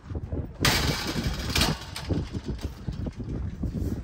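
Wind buffeting the microphone in a steady low rumble, with a loud burst of rushing noise from about half a second in to near two seconds.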